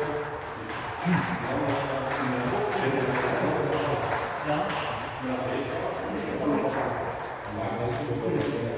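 Table tennis balls clicking irregularly on tables and bats in a sports hall, as sharp short ticks at uneven intervals.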